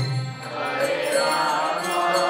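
Devotional kirtan: a group of voices chanting a mantra over sustained harmonium chords, with a low beat at the very start.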